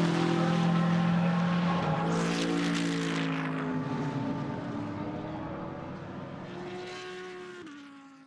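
BMW M6 GT3 race car's twin-turbo V8 pulling away and fading into the distance. Its note climbs slowly and drops sharply at upshifts, about two seconds in and again near the end.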